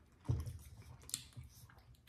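Faint, scattered clicks and light taps from eating and handling things at a table, with one sharper click a little over a second in.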